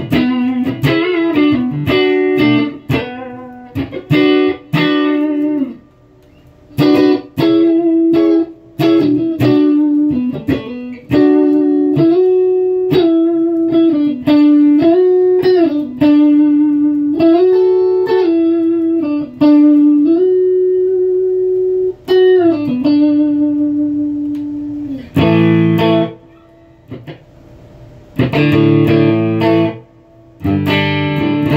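Clean electric guitar, a Strat-style McLguitars Silverback with three single-coil pickups, played through an amp: a run of single notes and double stops with string bends, a short pause about six seconds in, then strummed chords near the end.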